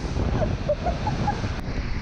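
The heavy, steady rush of a huge waterfall, Iguazú Falls, heard close up at the viewpoint, with spray and wind buffeting the microphone.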